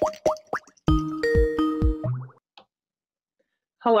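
A few quick rising plopping chirps, then a short synthesized jingle of held notes lasting about a second: a video-call ringing or connecting sound as a call is placed. A voice says "Hello?" at the very end.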